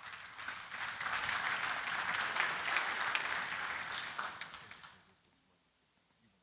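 Audience applauding, building over the first second and dying away about five seconds in.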